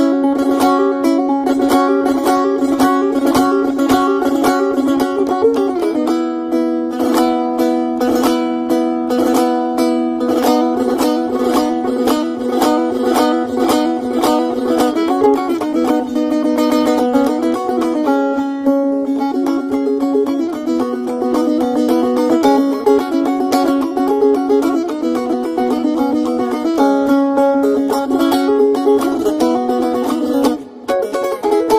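Instrumental music: quick, busy plucked-string notes over a steady held drone, with no voice.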